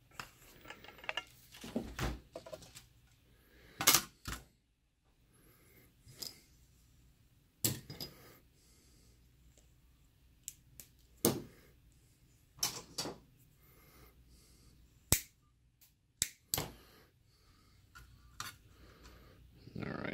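A router's circuit board and its plastic housing being handled on a workbench: about a dozen separate sharp clicks and knocks, a second or more apart, with quiet room tone between them.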